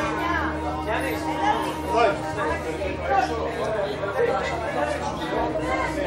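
Overlapping chatter of many people talking at once, a small crowd milling around after an event, with no single voice standing out.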